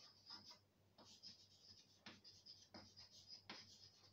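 Chalk writing on a blackboard, faint: a steady scratching with short taps and strokes as letters are formed.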